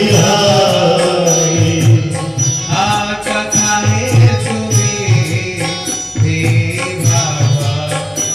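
Hindu devotional singing: a voice sings a bhajan-style chant over instrumental accompaniment with a rhythmic beat.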